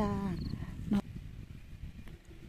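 A woman's voice ends a word, then a short click about a second in. After it comes an uneven low rumble, typical of wind buffeting a phone microphone outdoors.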